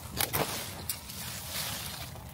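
Garden snips cutting through a peony stem: two short sharp clicks just after the start, followed by soft rustling as the leafy stem is handled.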